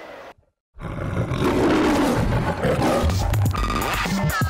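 Faint stadium ambience cuts to a moment of silence, then a channel-ident sting starts about a second in: a big-cat roar sound effect over music, with a rising sweep near the end.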